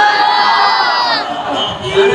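A drawn-out chanted call, loud and sustained, that falls away about a second in; another chanted phrase begins near the end.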